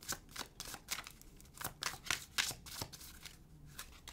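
A tarot deck being shuffled by hand: a quick, irregular run of short card snaps and rustles.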